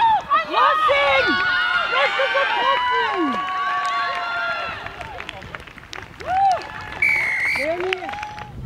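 Many voices, mostly high-pitched, shouting and cheering over one another, fading after about four seconds. Near the end comes a short referee's whistle blast, signalling a try.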